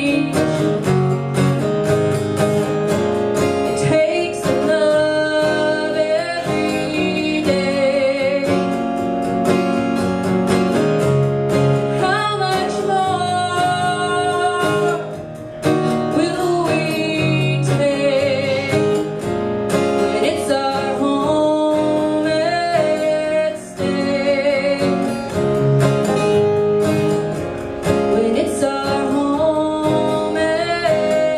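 A woman singing solo while strumming an acoustic guitar, with some held notes sung with vibrato.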